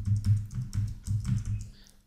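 Computer keyboard keys typed in a quick, even run, about four or five strokes a second, entering an ID number; the typing stops shortly before the end.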